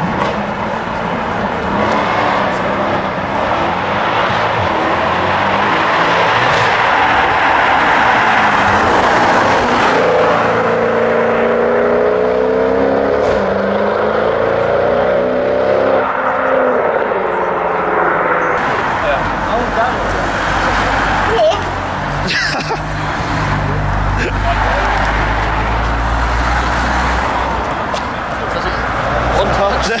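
A Mercedes C-Class coupé's engine passing close by. Its note swells and then falls away as the car goes past, followed by a low rumble as it pulls away, over steady road and crowd noise.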